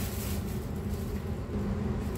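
Steady low hum with an even hiss, without clear knocks or rustles.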